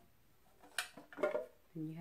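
Pieces of a plastic stacking cosmetic organizer knocking together as they are handled and set down: one sharp clack a little under a second in, then a few lighter knocks.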